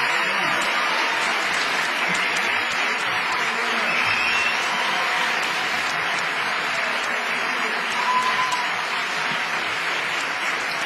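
Concert audience applauding steadily: a sustained round of clapping from a full hall.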